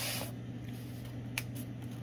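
Handling of the model-locomotive packaging: a short rustle at the start and a single sharp click about one and a half seconds in, over a steady low hum.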